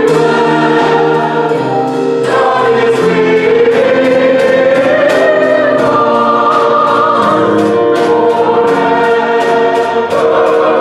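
Mixed church choir of men's and women's voices singing a sacred piece in parts, with an accompaniment that keeps a steady beat.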